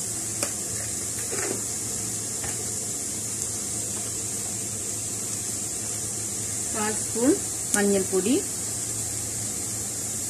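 Cauliflower and scrambled egg frying in oil in a nonstick pan, a steady high sizzle, with a few faint knocks in the first seconds.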